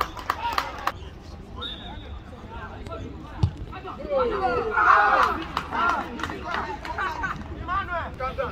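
Football players and onlookers shouting across an outdoor pitch, calls scattered through and loudest about five seconds in. A single sharp knock sounds a little before that.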